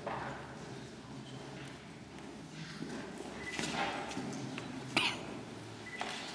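Room noise of a small standing gathering: shuffling feet and clothing rustle on a hard floor, with a faint murmur and a sharp knock about five seconds in.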